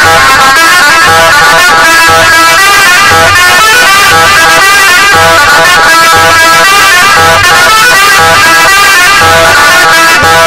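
Loud live instrumental dance music from an Egyptian folk band: an electronic keyboard melody over a steady hand-drum beat with a regular low thump.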